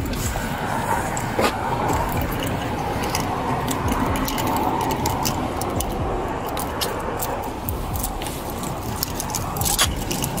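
Handcuffs being unlocked and taken off a man's wrists: a run of small metal clicks and jangling from the cuff key and chain, with a sharper click a little over a second in and another near the end, over a steady background rumble.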